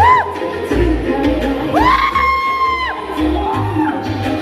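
Live concert music with a pulsing heavy bass beat. A short rising whoop cuts in at the start, and a longer whoop rises about two seconds in, holds for about a second, then drops away, over crowd noise.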